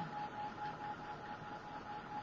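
Craft heat gun blowing steadily, a constant rush of air with a faint steady whine.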